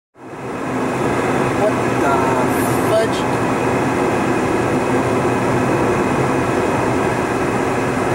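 Steady road and engine noise inside a car driving at freeway speed, fading in just after the start.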